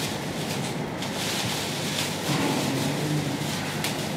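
Crinkling of blue plastic oversleeves being pulled on over the arms, in short rustles, over a steady droning background noise.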